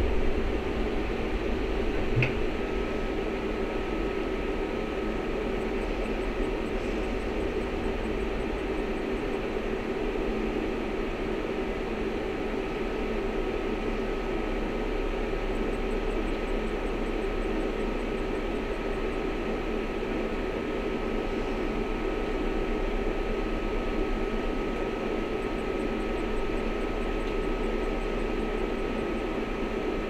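Interior hum of an Ikarus 412 trolleybus standing still: a steady hiss and drone from its onboard fans and electrical equipment. A thin, steady high whine joins in just after a short click about two seconds in.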